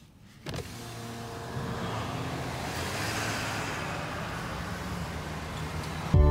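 Car's electric power window motor lowering the side glass. It starts with a click about half a second in and runs with a steady hum for about five and a half seconds.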